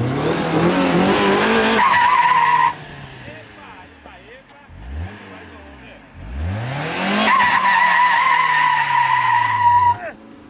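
Fiat Uno doing a burnout: the engine is revved hard and the spinning front tyres squeal in a steady, high-pitched note. This comes in two loud bursts, the first ending about two and a half seconds in, the second starting with a rising rev about six and a half seconds in and cutting off sharply at the end.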